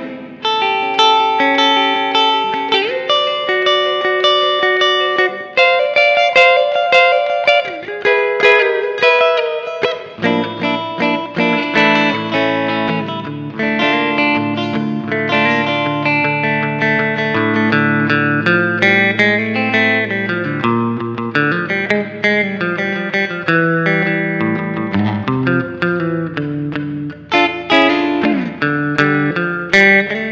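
Surf-rock instrumental played on a Telecaster-style electric guitar, picking a quick single-note melody through effects. A bass line comes in about ten seconds in and carries on under the guitar.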